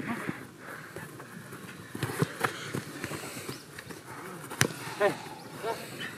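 Small-sided football game on artificial turf: scattered distant shouts from the players, a few knocks, and one sharp kick of the ball about three-quarters of the way in.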